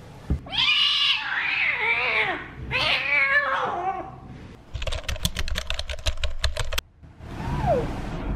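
A kitten meowing: two long, loud cries in the first four seconds, then a rapid run of even pulses, about eight a second, for roughly two seconds, and a short falling meow near the end.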